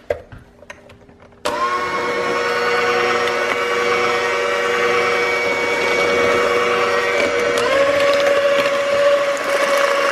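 Electric hand mixer switched on about a second and a half in and running steadily, its beaters whipping butter, sugar, eggs and vanilla into a batter. Its motor hum rises slightly in pitch about three quarters of the way through.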